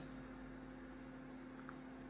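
Quiet room tone with a faint steady low hum, and one tiny tick near the end.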